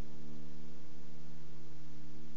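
A steady electrical hum with a stack of overtones under a hiss, nearly as loud as speech and unchanging. It is a glitch on the recording's audio while the computer misbehaves.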